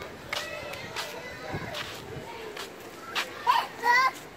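Children's voices and chatter in an outdoor playground, faint and scattered, with a closer, louder voice near the end.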